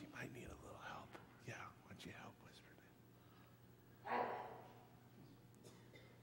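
Children whispering a short phrase from ear to ear: soft, breathy whispers and hushed murmurs, with one louder breathy burst about four seconds in.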